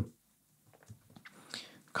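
A short pause in a man's talk, nearly silent: a few faint clicks around the middle and a soft intake of breath near the end, just before he speaks again.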